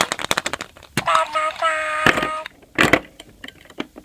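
Hard plastic surprise egg clicking and rattling as it is handled and snapped open: a quick run of clicks, then two sharper knocks. In the middle comes a short burst of high-pitched, voice-like tones.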